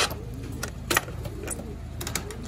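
A few short, sharp clicks and light rattles, the loudest about a second in, over a steady low hum.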